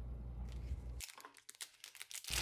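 Clear plastic packaging bag crinkling as it is handled and pulled open around a pocket microscope, in scattered short crackles from about a second in.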